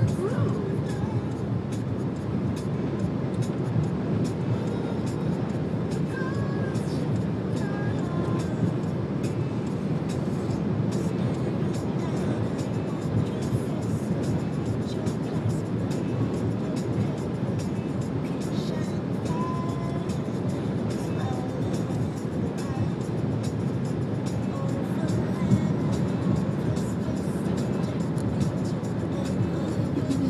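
Steady road and engine noise of a moving car heard from inside the cabin, with music playing underneath.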